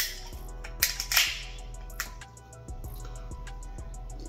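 Pull-tab aluminium can of carbonated gin cocktail cracked open: a sharp pop with a short fizz about a second in, over quiet background music.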